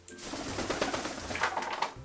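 A male eclectus parrot flapping its wings hard on a person's shoulder: a rapid fluttering rustle lasting nearly two seconds, fading out near the end.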